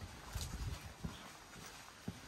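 Quiet footsteps walking on a concrete path: a few short, soft thuds.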